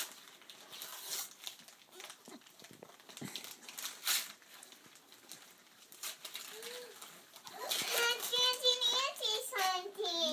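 Gift wrap and tissue paper rustling and tearing as a present box is opened by hand: a string of faint, scattered crinkles and rips. A high child's voice comes in near the end, louder than the paper.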